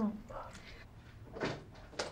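A wooden door being handled: a soft knock about one and a half seconds in and a sharp click near the end, as of a door being opened.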